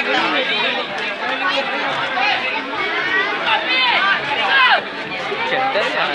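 Crowd chatter: many voices talking over one another at once, with no single speaker standing out.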